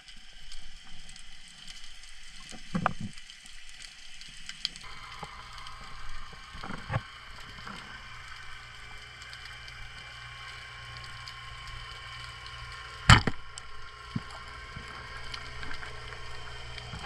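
Underwater, a short speargun fires once with a sharp crack about 13 seconds in. Before it come a few softer knocks from handling the gear, over a steady hum and faint crackling clicks.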